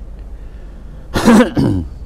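A man clearing his throat: a loud two-part 'ahem' about a second in, the second part shorter and falling in pitch.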